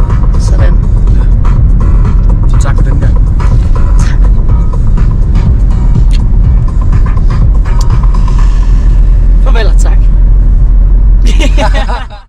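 Car driving, its road and engine rumble loud and steady inside the cabin, with scattered clicks.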